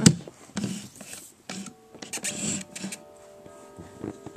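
A click as the power switch on the side of a Midland WR-100 weather radio is flipped, then scuffing and rustling as the radio is handled. From about three seconds in, a faint steady electronic tone at several pitches at once.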